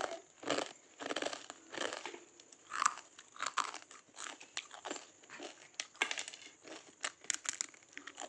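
Crisp fried rice-flour murukulu (chakli) being bitten and chewed close to the microphone: a run of irregular crunches, crunchy as a well-fried murukku should be.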